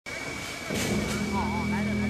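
Crowd chatter and voices at an outdoor gathering, over a steady low hum and a thin high steady tone.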